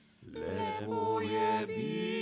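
About a quarter of a second in, voices begin singing a held, chant-like chord in harmony, the sustained notes wavering slightly.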